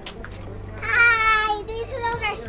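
A young girl's high-pitched, drawn-out vocal squeal lasting under a second, sliding slightly down in pitch, followed by a few shorter voiced sounds near the end.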